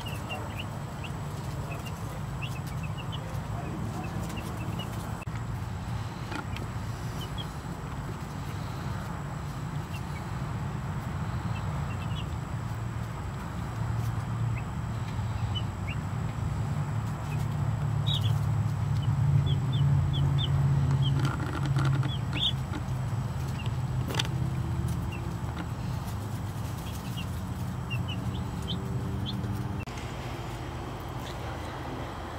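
A brood of two-day-old Cornish Cross broiler chicks peeping, with many short, high cheeps scattered throughout, over a steady low rumble that grows a little louder midway.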